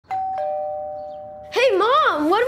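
Two-note doorbell chime: a higher note, then a lower one about a third of a second later, both ringing on and slowly fading.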